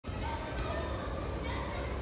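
Shop ambience: background chatter of shoppers, including children's voices, over a steady low hum.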